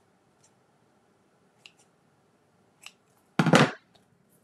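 Scissors working on seam-binding ribbon: a few faint snips and clicks, then a loud, short burst of noise about three and a half seconds in.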